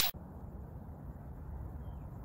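An intro swoosh cuts off at the very start, then a steady, fairly quiet outdoor background noise, mostly a low rumble, picked up by the phone's microphone.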